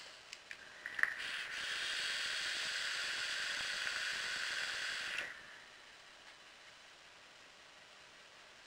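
A few small clicks, then a long draw on a rebuildable dripping atomizer fired on a mechanical mod: a steady hiss of air and vapour through the atomizer for about four seconds that cuts off suddenly.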